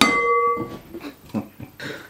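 A single ringing clink of glass on glass as a glass blender jug knocks against the rim of a glass mixing bowl, its tone dying away within about a second, followed by a few softer knocks as the ground oats are tipped out.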